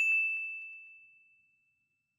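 A notification-bell 'ding' sound effect: a single bright chime that strikes once and rings out, fading away over about a second and a half.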